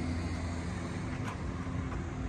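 A steady low mechanical hum under faint background noise.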